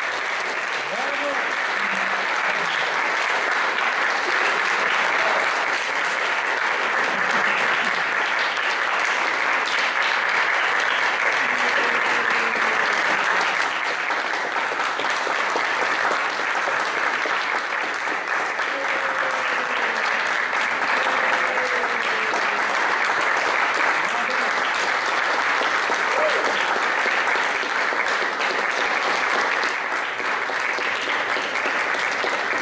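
Audience applauding steadily after a solo viola performance, with a few voices heard among the clapping.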